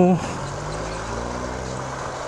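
Motorcycle engine running at low speed in city traffic, a steady hum whose pitch rises slightly as the bike pulls along, over road and wind noise.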